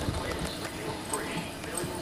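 Hoofbeats of a ridden filly moving over the soft dirt footing of an indoor arena, as a run of dull, irregular thuds.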